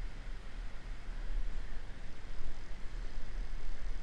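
Steady rumbling hiss of wind on an action camera's microphone, wavering in strength and growing slightly louder after about a second.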